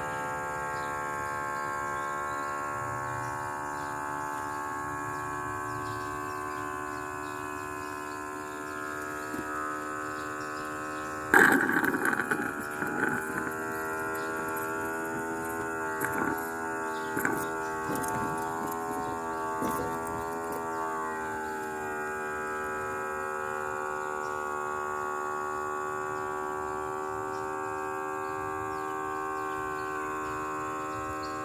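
A steady hum made of several held tones. About eleven seconds in, a sudden loud knock is followed by several seconds of scattered clicks and knocks, while the hum's pitch wavers before it steadies again.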